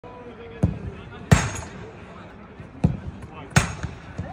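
Footballs being kicked hard in a shooting drill: four sharp thuds, the loudest about a second in, each with a short echo.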